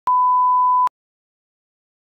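A 1 kHz reference tone of a bars-and-tone video leader: one steady beep lasting just under a second, switched on and off with a click.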